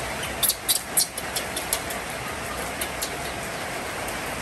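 Steady hiss of rain falling. About half a second in, a quick run of sharp, high clicks lasts just over a second, with a few fainter clicks later.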